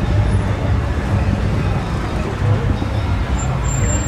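Street traffic noise: a steady low rumble of vehicles on the road, with voices of people close by.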